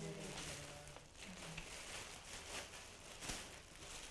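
Faint, intermittent crinkling of a clear plastic bag being handled and opened, with scattered short crackles.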